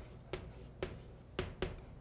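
Chalk writing on a blackboard: several short, sharp chalk strokes and taps as letters are written.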